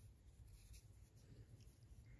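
Near silence, with faint light rustling and scratching of cotton yarn and fabric handled with a crochet hook.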